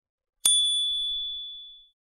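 A single bright bell ding, the notification-bell sound effect of a subscribe animation, struck about half a second in and ringing out with a clear high tone that fades over about a second and a half.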